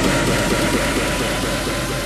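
Jet airliner engines heard from inside the cabin during the climb after takeoff: a loud, steady roar with a faint whine, slowly fading.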